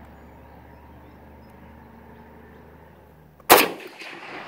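A single shot from an SKS rifle firing old 7.62×39 mm plastic-core training ammunition: one sharp report about three and a half seconds in, with its echo trailing off over about a second.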